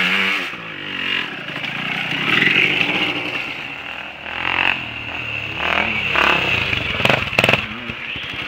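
Quad (ATV) engine revving and easing off in repeated swells as it climbs a dirt track, with a few sharp clicks near the end.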